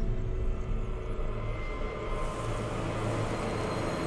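Cinematic logo-sting sound design: a steady low rumbling drone, with an airy hiss coming in about halfway through.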